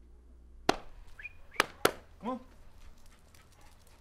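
Three sharp knocks, the loudest sounds, about two-thirds of a second in and then twice in quick succession near two seconds in, with a brief high chirp between them; a man says "come on".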